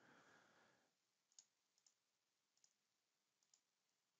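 Near silence, with a few very faint, widely spaced clicks from a computer keyboard and mouse as a search is run.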